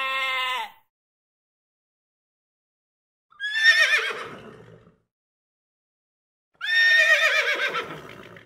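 A sheep's bleat ends in the first second. After a silence, a horse whinnies twice, each a quavering call that is loudest at its onset and trails away; the second comes about three seconds after the first.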